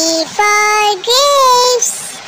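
A high, child-like voice saying "for grapes" in a sing-song tone, as two held syllables, each about half a second long.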